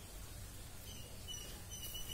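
Faint birds chirping: a few short, high notes in the second half, over a low rumble.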